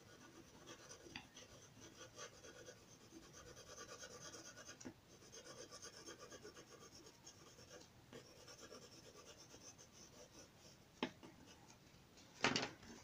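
Wooden graphite pencil shading on paper: faint, quick back-and-forth scratching strokes, with one sharp tick about a second before the end.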